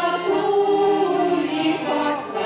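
Belarusian folk choir, mostly women's voices, singing in harmony and holding long notes; the phrase breaks off near the end and a new one begins.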